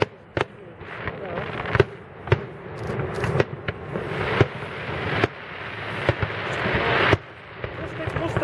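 Aerial firework shells bursting overhead: a string of sharp bangs, roughly one a second.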